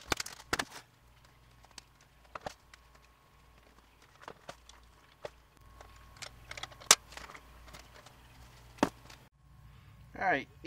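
Scattered knocks and clanks as a rear-tine tiller is lifted and handled and its airless wheels are fitted onto the axle. The loudest knock comes about seven seconds in.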